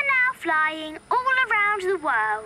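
A child's cartoon voice singing a short sing-song phrase of about three long held notes that step up and down in pitch.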